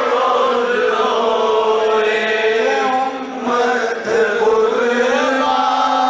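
Devotional Islamic chanting: voices in a continuous, drawn-out melodic recitation, with two brief dips a little after three and four seconds in.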